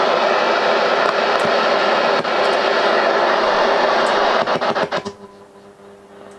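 Portable AM radio giving loud, even static hiss while the transmitter is off-air during the power-supply swap. About four and a half seconds in, a few crackles come as the transformer-based supply is plugged in. The hiss then drops away to a quiet, steady 100 Hz mains hum carried on the signal from that supply.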